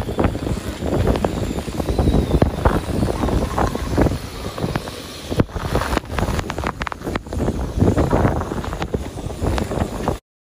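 Typhoon wind of about 25–30 knots gusting hard against the microphone, with rain driving across the deck; the gusts rise and fall without a break.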